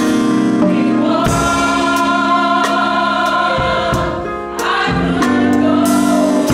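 Gospel choir singing held chords over organ, piano and drum kit, with cymbal strikes marking a steady beat. The music eases briefly about four and a half seconds in, then comes back full.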